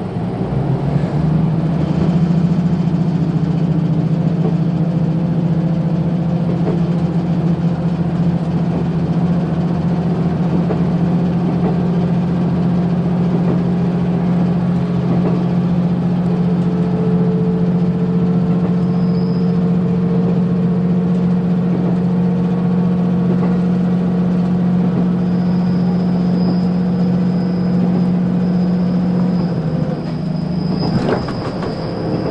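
Diesel engine of a KiHa 185 series railcar, heard from inside the car, running under power with a steady low drone that comes in about a second in, over running noise. A fainter higher tone slowly rises in pitch as the train gathers speed.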